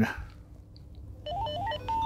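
Motorola CLP107 two-way radio sounding its clone-mode acknowledgement tones as it enters cloning mode: about halfway in, three quick runs of beeps stepping up in pitch, then a held beep.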